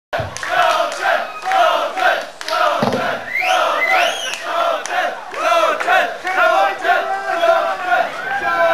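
Concert audience shouting and chanting together, with high whoops that rise in pitch about halfway through.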